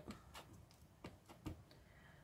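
A few faint, scattered taps and clicks of a clear acrylic stamp being handled and pressed onto an ink pad, the clearest about one and a half seconds in.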